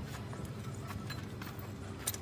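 Scattered light metallic clicks and knocks as the steel gear clusters of an opened Caterpillar 140H grader transmission are handled and turned by hand, over a steady low hum.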